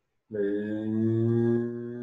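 A man's voice chanting one long, steady low note, starting about a third of a second in and held past the end, loudest in its first second and a half and then a little softer.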